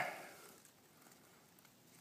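Near silence: faint outdoor background after a spoken word fades out in the first half second.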